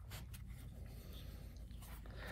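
Small hand scraper drawn across the top of a silicone brick mold, leveling wet cement mix: a few faint, soft scrapes.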